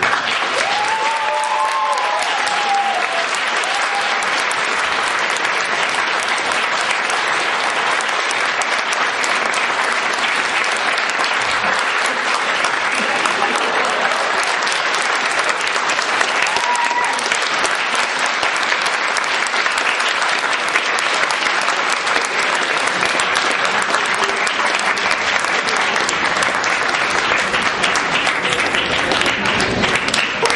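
Audience applauding steadily, a dense unbroken clapping.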